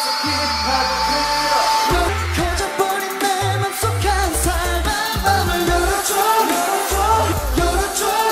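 A K-pop stage performance: a male singer with a pop backing track. His voice holds a long note, then a deep pulsing bass line comes in about two seconds in under the singing.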